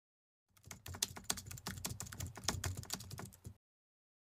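Fast typing on a computer keyboard: a quick run of keystroke clicks starting about half a second in and stopping shortly before the end.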